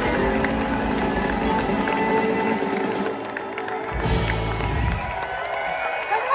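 Live electric blues band (guitars, keyboards, drums) playing a song's closing notes, with a heavy low hit about four seconds in, over a cheering, clapping crowd.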